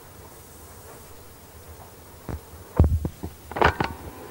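A low steady hum for about two seconds, then a cluster of short knocks and dull low thumps, loudest just under three seconds in, with a few sharper clicks near the end.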